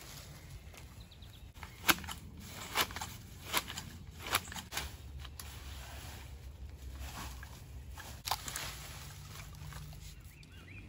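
Garden fork tossing clipped spinach greens into a wooden compost bin: a series of sharp clicks and knocks every second or so, over a low steady hum.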